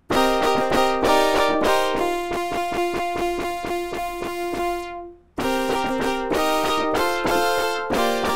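A patch on the Xfer Serum wavetable software synthesizer played on a keyboard: short bright notes, then a held note that pulses about four to five times a second. After a short break just past the five-second mark, more notes follow. The filter envelope pulls the filter down as each note is released.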